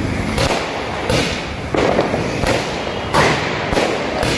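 Diwali firecrackers going off in the street: about six sharp bangs at a steady pace, roughly two-thirds of a second apart, over a continuous noisy haze.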